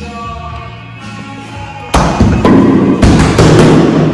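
Heavy plate-loaded dumbbells dropped to the floor at the end of a bench press set: a sudden loud crash about two seconds in, followed by several more impacts and clatter for about two seconds. Music plays underneath.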